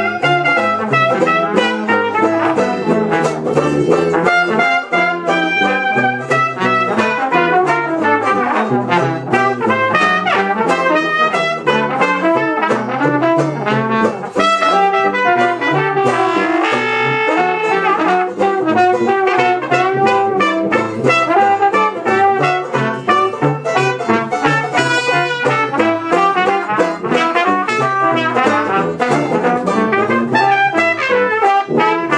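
Dixieland jazz band playing live, trumpet and trombone leading together over the band, with a long held note a little past halfway.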